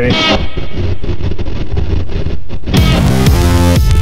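A song playing, with a brief laugh at the start; about three seconds in it turns to a fuller, brighter sound as the track gets going.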